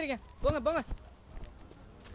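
A person's voice making short sing-song calls that rise and fall in pitch, two quick ones about half a second in, with a soft knock.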